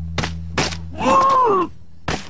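Cartoon sound effects: two sharp hits, then about a second in a cartoon character's vocal groan that rises and falls in pitch.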